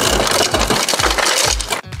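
Refrigerator door dispenser dropping ice into a stemmed glass: a dense rattle of ice clattering against the glass, stopping near the end. A steady low beat of background music runs under it.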